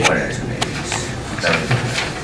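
Indistinct speech in a room, with a short sharp click just over half a second in.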